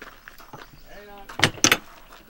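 Two sharp knocks at a camper trailer's door, about a quarter-second apart, roughly a second and a half in.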